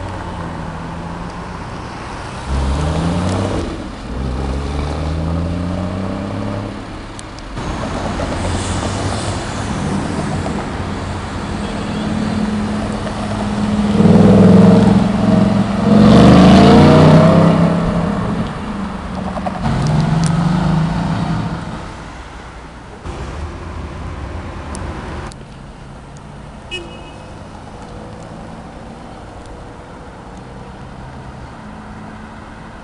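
Cars accelerating away along a city street, their engines rising in pitch through several gear changes about 3 to 7 seconds in. The loudest pass, around the middle, is a red Audi R8 sports car's engine revving up as it pulls away, followed by quieter traffic.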